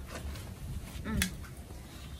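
Wind rumbling steadily on the microphone, with a brief murmur from a person about a second in.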